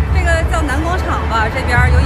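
A voice over background music with a steady low bass hum.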